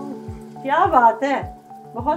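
Samosas deep-frying in a wok of hot oil, sizzling under background music with a steady beat; a voice cuts in about a second in.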